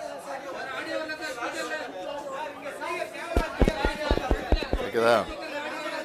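Voices talking in a room, with several people chattering at once. In the middle a quick run of about nine sharp taps or clicks comes over the talk.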